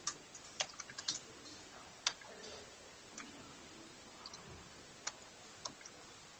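Irregular clicking of computer keys, about a dozen clicks bunched near the start and then scattered, over a low steady hiss.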